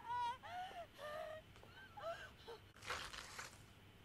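A woman's short, high, wavering cries and whimpers, several in the first two and a half seconds, followed by a harsh breathy gasp about three seconds in; faint.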